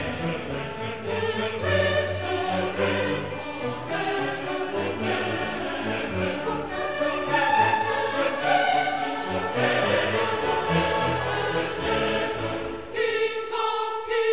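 Recorded classical music, an orchestral piece with choral singing. Near the end the low parts drop away under one held note.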